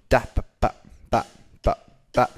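Sampled rock drum loop playing back, a beat of kick and snare hits about two a second.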